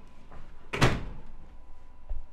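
A door shutting once, with a single sharp impact a little under a second in.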